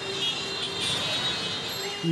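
Steady city road-traffic noise, a continuous wash of vehicle engines and tyres.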